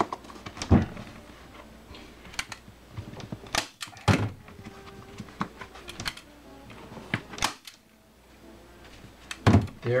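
Irregular sharp clicks and knocks, about seven in all, from a manual staple gun and from a vinyl cover being stretched over a plastic motorcycle seat pan during re-upholstering.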